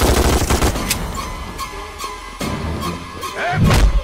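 Film soundtrack: a burst of rapid automatic rifle fire at the start, mixed over background music, with a heavy low thud near the end.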